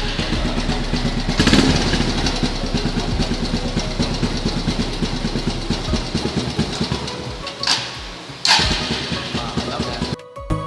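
Yamaha Byson single-cylinder motorcycle engine running at idle, its fast even beat swelling briefly about a second and a half in. Two sharp clicks come near the end.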